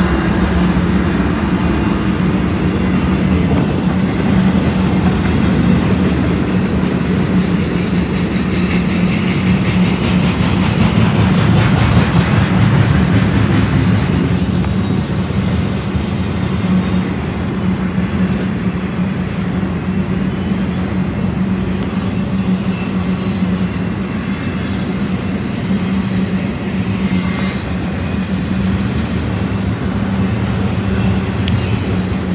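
Cars of an empty intermodal freight train, flatcars with folded-up trailer hitches, rolling past close by: the steady, loud noise of steel wheels running on the rails, slightly louder about ten to fourteen seconds in.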